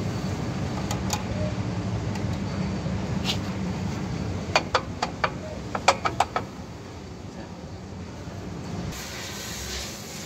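Metallic clicks of drum brake shoe hardware being pressed and twisted into place by hand, a few early and a cluster of sharp clicks midway, over a low steady rumble that fades about halfway through.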